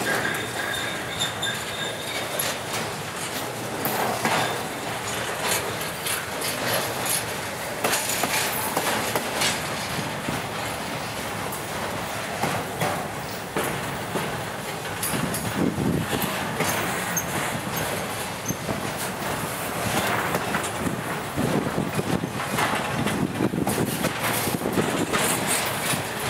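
Double-stack intermodal freight cars rolling past close by: steady wheel-on-rail noise packed with rapid clicking over rail joints. A faint high wheel squeal sounds in the first two seconds.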